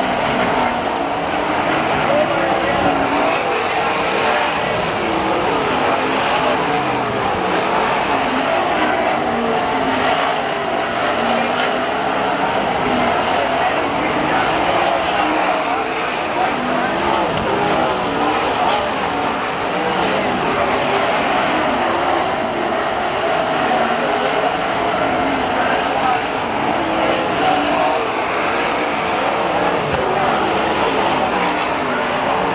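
A field of dirt-track sprint cars racing flat out. Their V8 engines run continuously, swelling and fading in pitch as the cars go past and round the turns.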